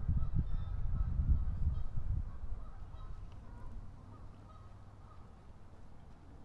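Geese honking faintly in the distance, under a low rumble on the microphone that is loudest in the first two seconds and then fades away.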